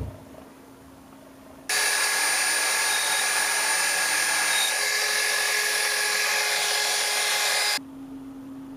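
A low thump, then a small electric drill runs at high speed for about six seconds, a steady loud whine with several high tones, starting and stopping abruptly.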